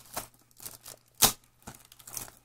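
Foil trading-card pack wrapper crinkling in the hands in a few short crackles, the loudest about a second in.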